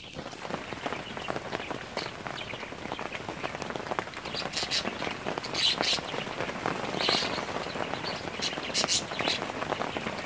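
Rain pattering steadily in a dense crackle of small drop ticks, with a few louder drop hits along the way.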